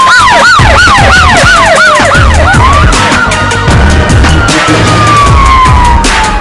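Siren sound effect over music: a fast yelping siren cycles up and down about three times a second for the first two and a half seconds, over a slower wailing siren tone that falls, swings back up, then falls again. A heavy low beat runs underneath.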